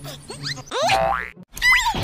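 Cartoon comedy sound effects: a run of springy boings with rising pitch, the biggest rising glide about a second in, cutting off abruptly and followed by a new squeaky warbling effect near the end.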